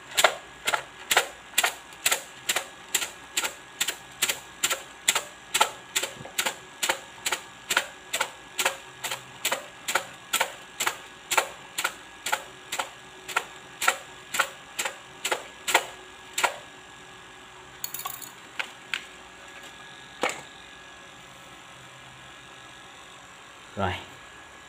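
A cup of fortune sticks being shaken in rhythmic strokes, the sticks clattering together about two to three times a second, as in Vietnamese xin xăm, to make one stick fall out. The shaking stops after about sixteen seconds, and a few separate clicks follow.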